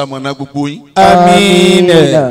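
A man's voice chanting a sermon in the melodic style of a Yoruba Islamic preacher. Short chanted phrases give way, about halfway through, to one long held note.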